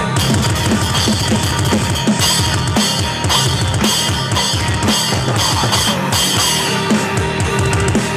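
Electronic drum kit played along with a heavy metal track: rapid bass drum strokes under snare hits, with cymbal crashes accenting from about two seconds in.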